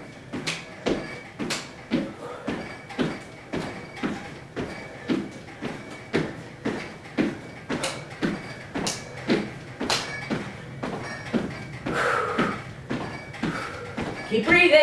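Sneakered feet thumping on a hardwood floor during jumping jacks, a steady rhythm of about two landings a second.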